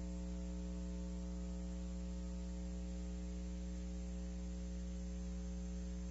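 Steady electrical mains hum, a low buzz with its overtones, unchanging throughout, with faint hiss.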